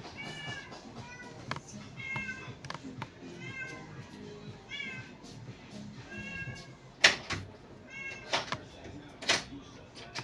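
A cat mewing over and over in short, high calls that rise and fall, about eight of them. Sharp clicks come between the calls, with louder knocks about seven seconds in and near the end.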